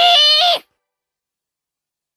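A young woman's high-pitched, drawn-out cry, voice-acted, that cuts off abruptly about half a second in and gives way to complete silence.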